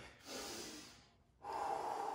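A man doing slow, deliberate recovery breathing after a hard agility drill: a short breath in, then, about a second and a half in, a long slow breath out.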